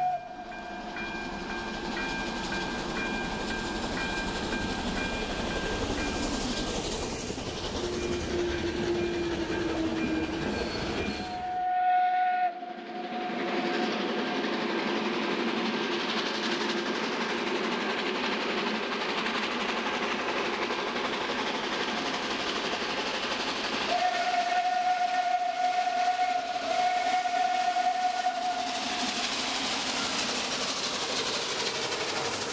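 Steam locomotive hauling a passenger train, its running and exhaust noise steady. Its steam whistle gives a short note about halfway through and one long, steady note of about five seconds near the end.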